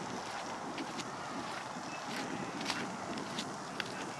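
Steady outdoor rush of wind on the microphone, with a few faint, sharp ticks scattered through it.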